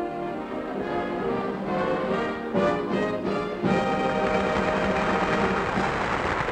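Studio orchestra with brass playing, with many instruments sounding together; it swells louder about three and a half seconds in.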